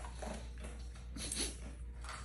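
A large dog making soft mouth and nose sounds as its muzzle is held and something is pushed at its mouth, with a brief, slightly louder noise a little past halfway.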